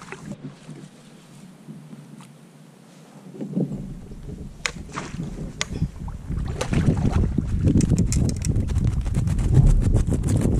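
Wind rumbling on the microphone and water around a kayak, with a run of sharp clicks and knocks from gear being handled on board. It is fairly quiet for the first few seconds, then grows louder and busier.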